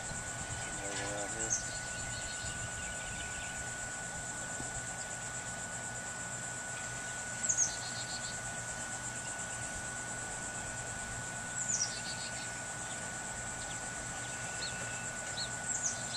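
Steady, high-pitched insect chorus trilling without a break, with a bird giving a few short descending calls.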